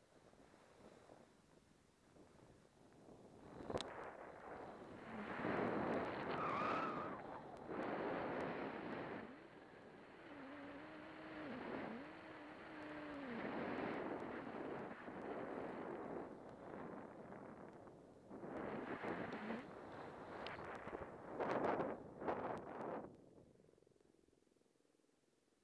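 Snowboard sliding and carving across wind-rippled snow: a scraping rush that swells and fades in long surges with the turns, starting a few seconds in and dying away near the end.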